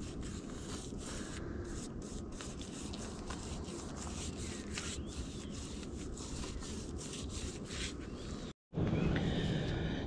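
Small paintbrush dabbing and scraping rubber sealant onto a flat roof: a string of short, soft brush strokes over a steady low rumble. The sound drops out for a moment near the end.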